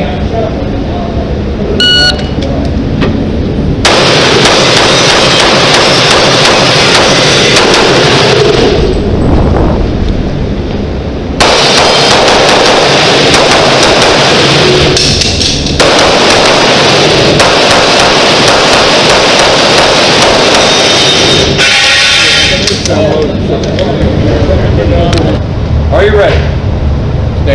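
A shot-timer start beep about two seconds in, then a run of pistol gunfire during a USPSA stage. The shots are so loud and dense that single reports do not stand apart, with short lulls around the tenth and the sixteenth second.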